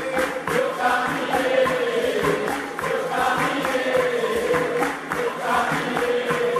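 Music: a choir of voices singing a slow melody.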